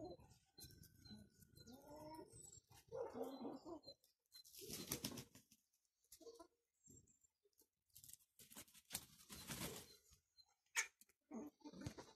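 Chickens making faint, low, drawn-out clucking calls during the first few seconds. Two rustling noise bursts, each about a second long, follow in the middle and later part, with scattered light clicks.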